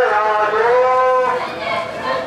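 Protest chanting: a loud voice holding long, drawn-out sung notes of a slogan, with a new phrase starting about half a second in.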